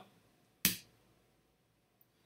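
A single keystroke on a computer keyboard, the Enter key pressed once about two-thirds of a second in, giving one sharp click.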